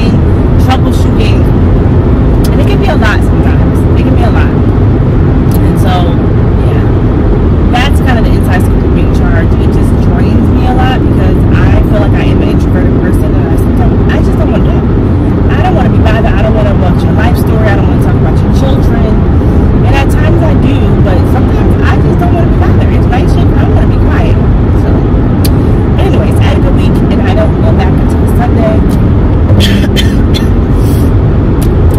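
Loud, steady road and engine noise inside a moving car's cabin, with a woman's voice talking faintly over it.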